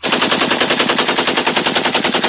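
A loud, rapid burst of sharp bangs, evenly spaced at more than a dozen a second, like a machine-gun burst used as a sound effect.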